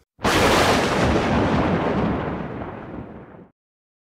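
Explosion-like sound effect: a sudden loud burst of rushing noise that fades over about three seconds and then cuts off abruptly.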